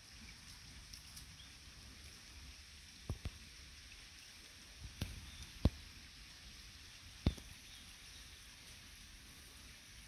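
Quiet outdoor ambience with a steady faint high hiss, broken by a handful of short sharp knocks: a close pair about three seconds in, then single ones about five, five and a half and seven seconds in.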